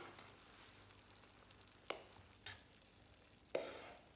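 A serving spoon clinking and scraping against a frying pan and a ceramic bowl as mushroom stew is dished out: three sharp clinks, the last the loudest, over a faint hiss.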